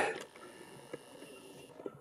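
Near silence: quiet room tone with a couple of faint, brief clicks.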